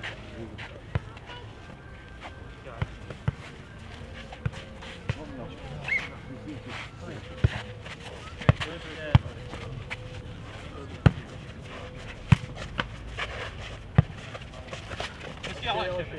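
A futnet ball being kicked and bouncing on a clay court during a rally: a series of sharp thuds at irregular intervals, about a dozen, with the loudest in the second half. Players' voices call faintly in between.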